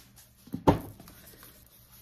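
Two short knocks of an item being handled on a tabletop, a small one and then a louder one shortly after it, followed by quiet.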